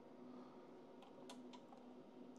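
Near silence with a faint steady hum and a few faint, short clicks about a second in, from test leads and a banana plug being handled on an electronics bench.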